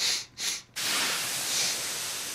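A steady rushing hiss, like steam or spray, from the anime's soundtrack, starting about three-quarters of a second in and slowly fading, after two short breathy puffs.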